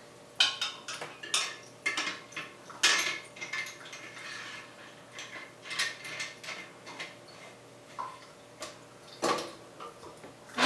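Irregular sharp metal clinks and clicks as a copper still's column is seated on its pot and the tri-clamp is fastened around the joint.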